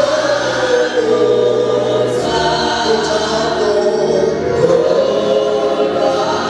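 Live gospel worship music: a choir singing long held notes over band accompaniment.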